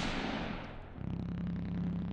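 The ringing tail of a loud bang fades out, then a low steady drone starts about a second in.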